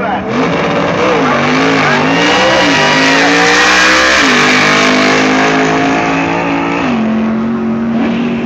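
Race car driving past on the circuit under hard acceleration. Its engine note climbs and then steps down in pitch twice, about four and seven seconds in, and it is loudest around three to four seconds in.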